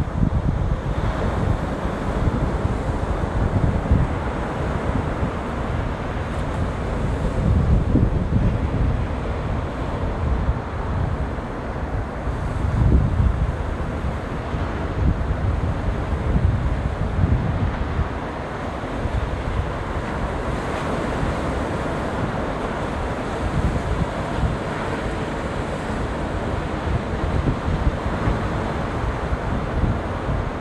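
Ocean surf breaking on the beach, a steady wash of noise, with wind buffeting the phone's microphone in low gusts a few times.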